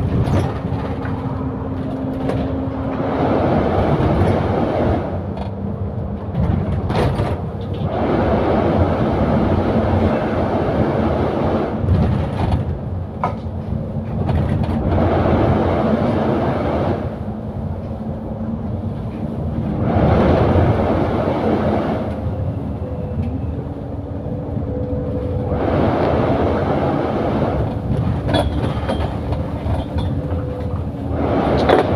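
Double-decker bus on the move heard from the upper deck: the engine note steps between gears every few seconds while road noise swells and fades. Short clicks and rattles from the bodywork run through it.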